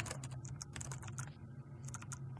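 Typing on a computer keyboard: a quick, irregular run of quiet key clicks as a short command is typed and entered.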